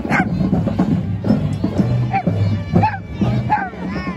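Parade music with a steady low bass line, over which a dog gives several short yips.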